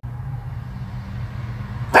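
A steady low hum under faint background noise.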